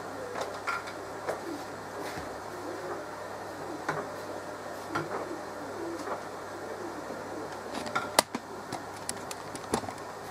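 Hands rubbing lard and fresh yeast into dry bread flour in a plastic mixing bowl: soft rustling and scraping, with scattered knocks of fingers against the bowl and one sharp click about eight seconds in.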